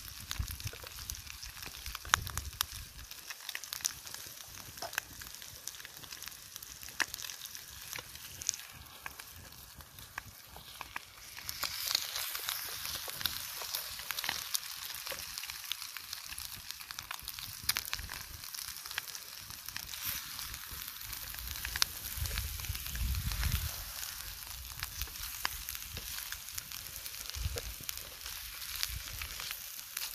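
Bacon and eggs sizzling in a frying pan over a wood campfire, with scattered pops and crackles. The sizzle grows louder about twelve seconds in.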